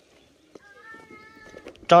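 A faint, drawn-out animal call held at one pitch for about a second, then a voice starts speaking near the end.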